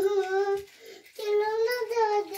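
A young child's high voice in long, held sing-song notes, two phrases with a short break a little past halfway.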